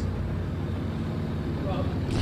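Steady low rumble of vehicle traffic, picked up on an open outdoor microphone.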